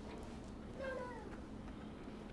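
Quiet classroom room tone with one short, faint, high-pitched vocal sound about a second in, falling in pitch, from a young child's voice.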